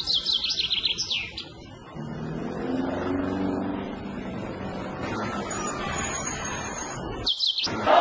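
A bird singing quick runs of falling chirps, one in the first second or so and another shortly before the end, with a low steady hum in between.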